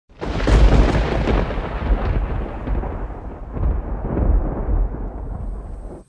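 Rolling thunder, likely a stock effect under the channel's logo intro: a sudden loud crack just after the start, then irregular rumbling swells that slowly fade and cut off abruptly.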